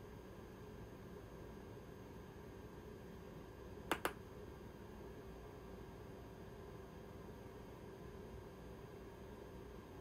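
Quiet room tone with a faint steady hum, broken once about four seconds in by a short, sharp double click.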